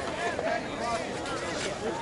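Indistinct voices of several people talking at once, with no one voice clear.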